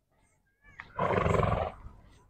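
A Marwari mare neighs once, a loud call lasting under a second, starting about a second in.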